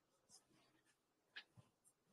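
Near silence on the voice-chat line, with one faint short click about one and a half seconds in.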